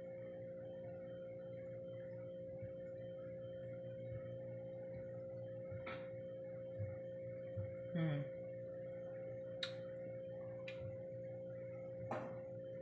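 A steady electrical hum with a constant high tone, under the quiet sounds of someone sipping a green smoothie from a glass. A short falling "mmm" of tasting comes about eight seconds in, and two sharp clicks come near the end.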